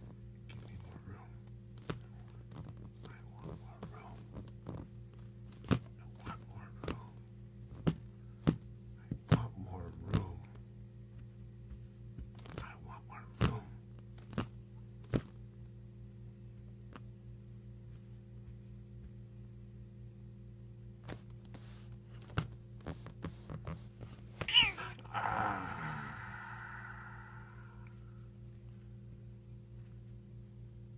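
A house cat batting and grabbing at a bare hand: scattered soft taps and scuffs of paws against skin, over a steady low hum. Near the end the cat gives one drawn-out meow.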